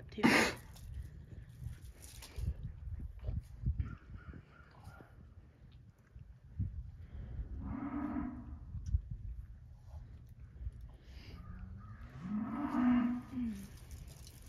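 Cow in labour mooing twice as she strains during an assisted delivery of a large calf: a short low moo about halfway, then a longer one that rises and falls near the end. A sharp knock right at the start.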